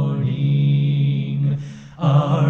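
Voices singing a hymn, holding the last note of a line ('morning'), which dies away near the end.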